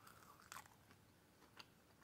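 Near silence with faint chewing of french fries: a soft crunch about half a second in and another faint one a second and a half in.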